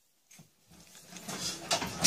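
A large whole fish dragged over a stainless steel sink and counter, a wet sliding and scraping that builds louder over the second half.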